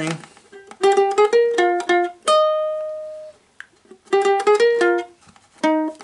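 Ukulele picked one note at a time: a run of about seven notes, the last one left ringing for about a second, then after a short pause the same phrase starting again.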